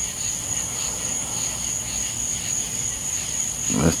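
Night insects, crickets or similar, calling: a steady high-pitched trill runs throughout, with a softer, repeating chirp beneath it.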